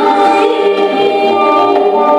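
A woman singing a slow, sustained melody into a microphone, accompanied by a bowed kamancha and a plucked tar.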